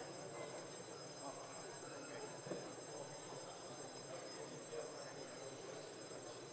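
Faint, steady murmur of scattered distant voices and movement in a large hall, with no one speaking into a microphone, over a faint set of steady high-pitched tones.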